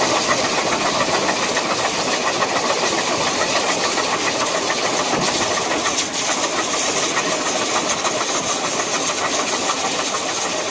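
Chinese-built QJ-class 2-10-2 steam locomotive working under power, its exhaust and steam hiss making a steady, loud noise.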